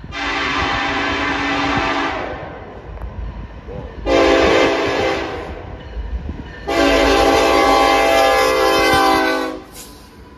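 Air horn of Norfolk Southern locomotive NS 1111 leading a freight train: a long blast, a shorter one, then a long blast of about three seconds, sounded for a grade crossing. The train's low rumble runs underneath.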